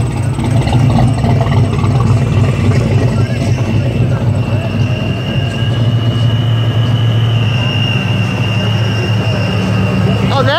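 Small-block V8 engines of cruising hot rods running at low speed, a steady deep exhaust rumble, loudest in the first few seconds. A faint high whine joins about halfway in.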